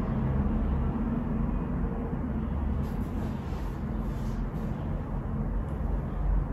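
Steady low rumble with a faint hum, like background traffic or room noise, with no distinct event. A few faint light rustles come around the middle.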